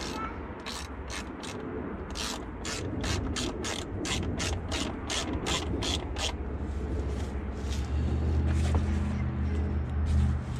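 A hand ratchet clicking in runs as a fastener is turned on a side-by-side's lower door panel, about four clicks a second at its fastest. A low steady hum comes in near the end.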